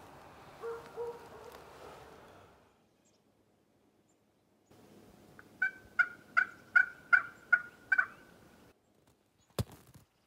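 A turkey yelping: a run of about eight evenly spaced notes, roughly two and a half a second, lasting about three seconds, after faint rustling at the start.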